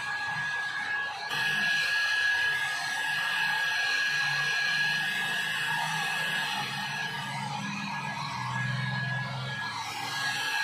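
Small handheld hair dryer running steadily: an even rush of air with a constant high whine from its motor. Music plays underneath.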